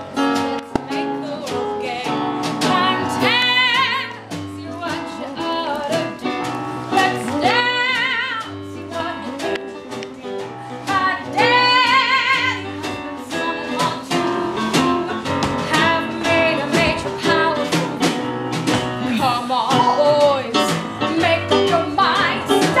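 A woman singing a show tune live over backing music with a steady beat. She holds several long notes with a wide vibrato.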